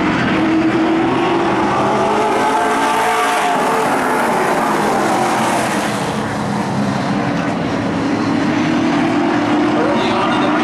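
A field of Pro Stock race cars' V8 engines running hard around the oval. The engine pitch rises and then falls in the middle as the cars pass.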